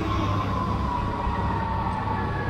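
DJI Mini 2 quadcopter propellers whining as the drone descends onto a hand, the pitch falling slowly as the motors throttle down, over a low rumble.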